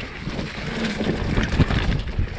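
Mountain bike descending a rough dirt singletrack, heard from a chest-mounted camera: wind buffeting the microphone, with the rattle and knocks of the bike over bumps, a few louder knocks about one and a half seconds in.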